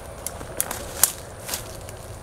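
Four light clicks of handling noise as a broken hard-plastic lure and a spinning rod are moved in the hands, over a steady outdoor background hiss.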